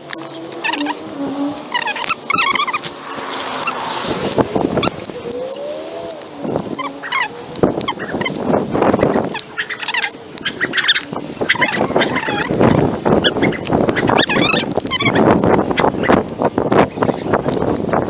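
Birds chirping and calling again and again, with a few lower calls that bend in pitch, over rustling and knocking from a hand-held camera on the move.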